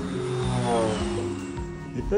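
Background music with steady held low notes and a descending pitch slide, like a comic sound effect, about half a second in.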